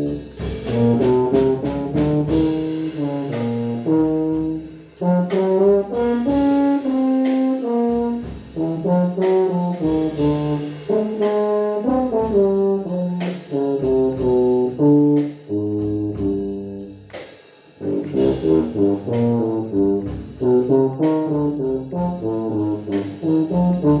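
Bass tuba playing a jazz melody of short, separate notes, with a drum kit keeping time under it. The music dips to two short pauses, about five seconds in and again about seventeen seconds in.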